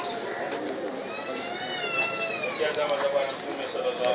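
Women wailing in grief: long, high, wavering cries that rise and fall, one after another, over a general murmur of voices.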